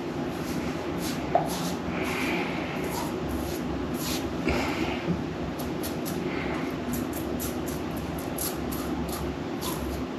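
Stainless steel Rex Ambassador safety razor scraping through lathered stubble in many short, irregular strokes, over a steady low background hum.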